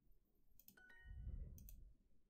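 Faint computer mouse clicks with a short multi-tone chime from the Duolingo lesson about a second in, the sound of an answer being checked as correct, over a soft low noise.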